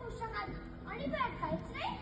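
Children speaking in high voices, a stretch of spoken dialogue.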